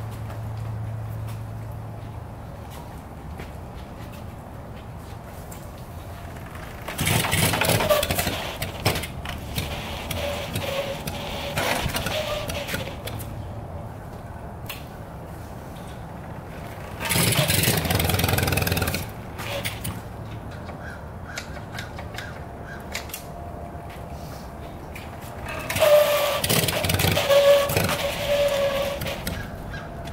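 1971 Yamaha CS200 two-stroke twin being bump-started: three bursts, each about two seconds long and roughly ten seconds apart, of the engine being turned over by the rolling rear wheel as the clutch is let out. The engine does not catch.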